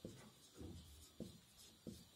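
Whiteboard marker drawing and writing on a whiteboard: about four faint, short strokes of the felt tip rubbing across the board.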